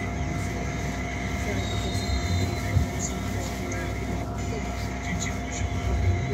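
Cabin sound of a Wright GB Kite Hydroliner hydrogen fuel-cell double-decker bus: a steady low rumble with a constant electric whine of several held tones. There is one sharp knock about three seconds in.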